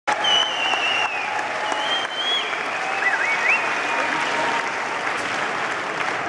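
Concert audience applauding, with several high, wavering whistles over the clapping in the first four seconds.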